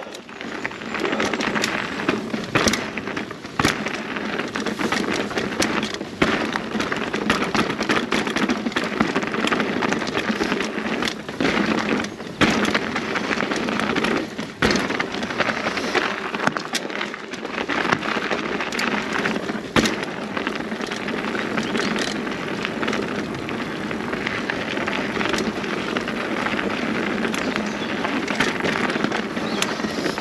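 Mountain bike ridden downhill on a dirt and rocky trail: a steady rush of knobbly tyres rolling over the dirt, with frequent sharp knocks and rattles as the bike hits rocks and bumps.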